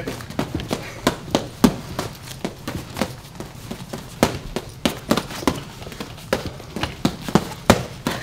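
Boxing gloves smacking against gloves and forearms as a flurry of punches is blocked: an irregular string of sharp slaps, about three a second.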